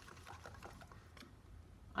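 Faint, scattered light clicks of a wooden stir stick against the inside of a plastic cup as acrylic paint is stirred.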